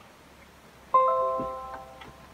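Windows 10 notification chime: a chord of a few bell-like tones that sounds about a second in and fades away. It is a Security and Maintenance alert signalling that possibly harmful software has been found on the computer.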